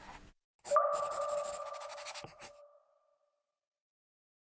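Logo sound effect: a sudden chime-like ping that rings on one steady two-tone note and fades out over about two seconds, over a soft hiss, with a couple of faint clicks near the end.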